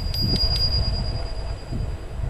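A bicycle bell rung four times in quick succession, its single high ring fading away over about a second, over a steady low rumble of wind on the microphone.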